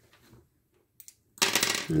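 Near silence with one faint click about a second in, then a breathy burst as a man's voice starts near the end.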